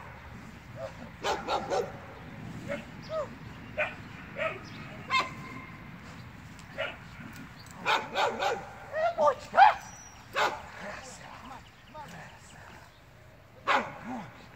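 A dog giving short barks and yips while it bites and tugs on a training sleeve. The calls come in scattered short bursts, loudest in a cluster about eight to ten seconds in.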